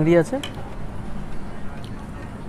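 A man's voice ends a phrase just after the start, then only a steady low background hiss remains, with a faint click near the end.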